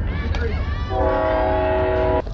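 A horn sounds a steady chord of several notes, starting about a second in and held for about a second.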